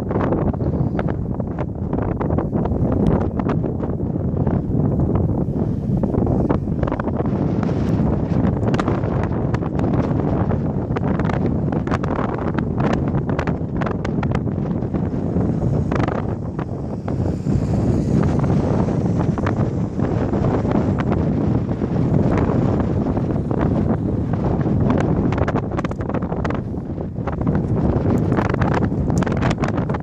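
Wind buffeting the microphone: a loud, steady low rumble with irregular crackling gusts, the wind strong enough that the riders are facing a headwind.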